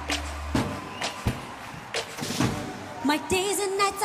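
Opening of Armenia's Eurovision pop song played back through the video: a few scattered percussive hits over a low hum, then a female singer's voice comes in about three seconds in.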